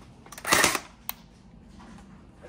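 A few light clicks, a short rustling burst about half a second in, and one sharp click about a second in, then quiet room tone: handling noise as someone moves through a carpeted room.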